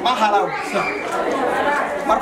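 Speech: a man talking in a room, with other voices chattering alongside.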